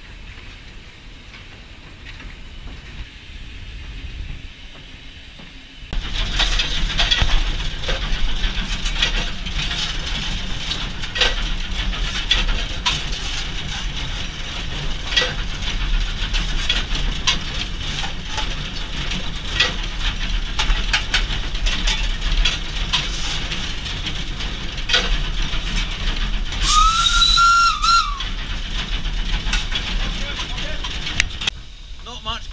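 Footplate noise of a steam locomotive under way: a steady rumble with scattered knocks and clanks, much louder from about six seconds in. Near the end the steam whistle blows once for about a second and a half, its note rising slightly, held, then dropping as it stops.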